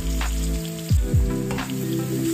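Sliced onions and whole garlic cloves sizzling as they fry and caramelize in a pan. Background music with held chords and deep drum hits plays over it, two of the hits about a second in.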